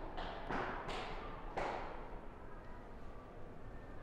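Quiet indoor ambience with a steady low hum and a few soft thuds in the first two seconds.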